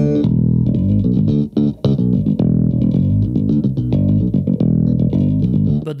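Music Man StingRay electric bass played in a busy run of plucked notes, with a brief break about one and a half seconds in.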